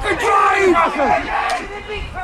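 Several voices shouting at once from rugby spectators and players during play, somewhat quieter in the second half.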